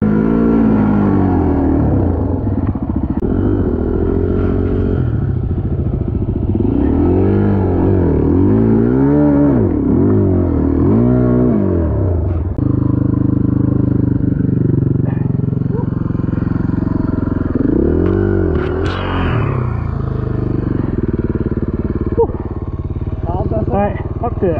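Suzuki DR-Z single-cylinder four-stroke dirt bike engine heard close up from on board, its revs rising and falling again and again as it is ridden over rough ground. A sharp clatter stands out about nineteen seconds in.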